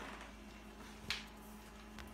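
Quiet room with a faint steady hum and one brief scratchy rustle about a second in, from a pencil tracing around a small doll's foot on folded black electrical tape.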